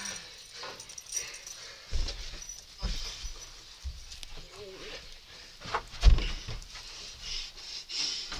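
Wrestlers scuffling on a wooden floor, with heavy thuds of bodies landing: one about two seconds in, another just before three seconds, and the loudest pair about six seconds in.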